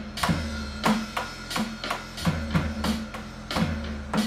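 Electronic drum kit played with sticks in a steady beat, about three hits a second, along with a song's backing music.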